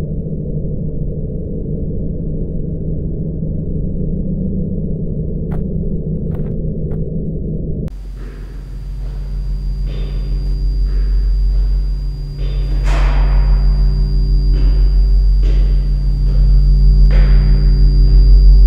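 Horror film score with no dialogue: a steady low drone that changes abruptly about eight seconds in to a deeper, rumbling drone with a thin high tone above it and repeated swelling hits, growing louder toward the end.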